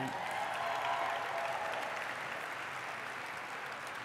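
Large audience applauding after a speech line, with a dense, steady patter of clapping that eases off slightly toward the end.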